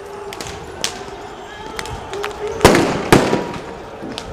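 Two loud explosive bangs about half a second apart, a little past the middle, each trailing off in an echo off the street, after a few smaller sharp cracks, over a background of shouting voices in a street riot.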